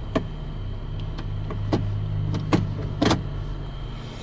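A series of sharp clicks from the gated automatic shift lever of a 2007 Toyota FJ Cruiser being moved through its gate. Under them is the steady low hum of the idling SUV with its air conditioning running.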